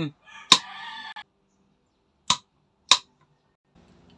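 Wall light switch being toggled: three sharp clicks, the first about half a second in and two more close together, about half a second apart, past the middle.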